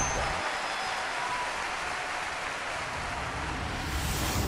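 Steady applause-like noise, an even hiss without beat or tune, from the sound effect of an animated channel logo outro.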